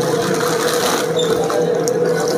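A clear plastic bag crinkling and rustling as a wiring harness is pulled out of it inside a cardboard box, with small clicks of handling, over a steady hum.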